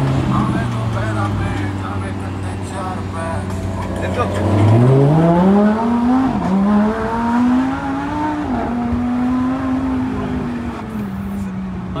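Lamborghini engine heard from inside the cabin, running steadily at low revs. About five seconds in, its pitch climbs as the car accelerates, holds high, and eases back down near the end.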